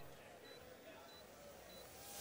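Near silence, broken by three faint, short high-pitched beeps from the Micro Drone 3.0 handset as its return-home button is held down.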